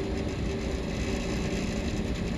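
Steady low hum of a motor running, with a faint steady tone in it, under faint handling sounds of a metal drill sonde tube being twisted in the hands.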